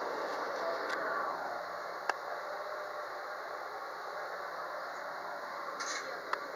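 Steady hum and hiss inside a stationary 213-series electric train as its onboard equipment runs while it waits at a stop. A few sharp clicks cut through it, the loudest about two seconds in.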